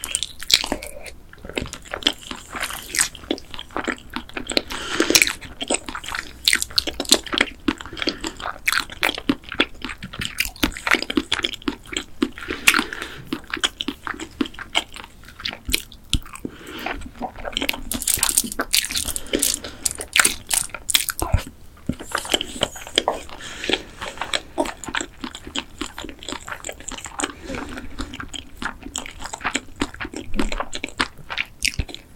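Close-miked biting and chewing of sauce-coated boneless fried chicken, with crisp crunches and many small irregular clicks throughout.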